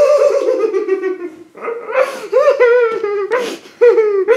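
A young woman laughing in a high-pitched voice: one long drawn-out burst, then from about a second and a half in a run of short, breathy bursts.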